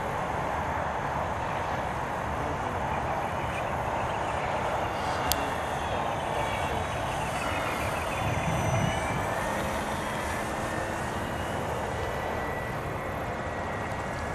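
Engine of a radio-controlled scale model Pitcairn PCA-2 autogyro running steadily as the model flies overhead, its whine drifting in pitch midway through. A sharp click sounds about five seconds in, and a brief low rumble swells around eight seconds.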